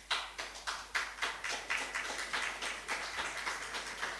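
Audience clapping in dense, irregular claps that start suddenly and slowly fade away.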